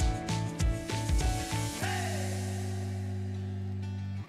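Background music: a steady drum beat under pitched chords for about the first two seconds, then a cymbal crash that rings away over a long held chord.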